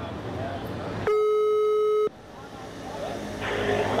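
A single steady telephone tone, about a second long, starting about a second in and cutting off sharply, with street traffic noise around it. Its length fits a Dutch ringback tone, the signal that the called phone is ringing.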